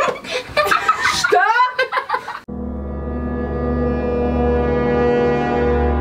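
Excited voices for about two seconds, then a long, low, horn-like sound effect comes in suddenly and holds one steady tone, swelling slightly.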